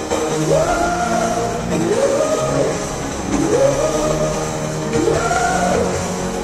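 Electro-industrial rock music: a pitched melodic line swoops up and falls back four times, about every one and a half seconds, over a steady sustained backing.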